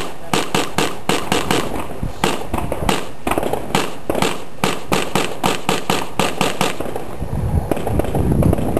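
A fast string of gunshots from a competitor's firearm, about five shots a second with short gaps, stopping about seven seconds in. A low rumble follows near the end.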